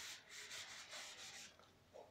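A hand rubbing chalk writing off a blackboard: a faint run of quick, rough back-and-forth wiping strokes that stops about one and a half seconds in.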